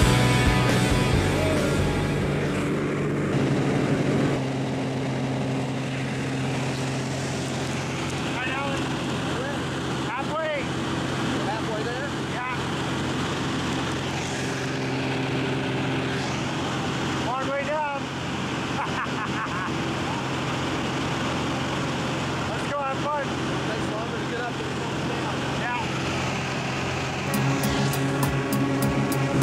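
Single-engine propeller plane's engine drone heard inside the cabin during the climb, a steady low hum, with muffled voices now and then over it.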